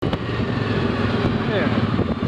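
ATV engine running steadily as the machine rides along a dirt road, cutting in suddenly from silence.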